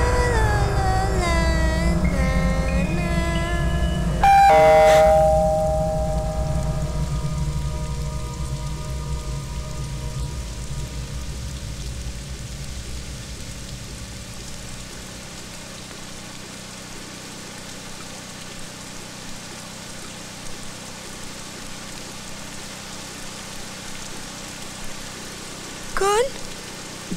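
A doorbell chimes once about four seconds in, a two-note ding-dong that rings out and fades over a couple of seconds, over steady rain. A melodic line plays in the first few seconds before the chime.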